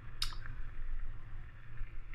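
A faint steady low hum, with one short sharp hiss about a quarter second in.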